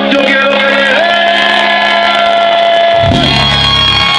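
Live merengue band playing loudly: a held chord with a long sustained high note and no bass, then the bass comes back in about three seconds in.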